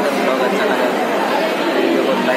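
Crowd chatter: many people talking at once in a steady babble of voices.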